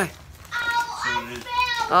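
A child yawning aloud: a drawn-out voiced yawn that starts about half a second in, holds a steady pitch and then wavers before it ends.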